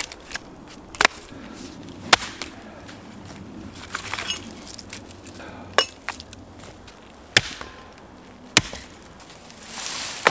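Axe chopping through thin birch tops and branches: about five sharp, unevenly spaced strikes, with smaller knocks and the rustle of twigs between them.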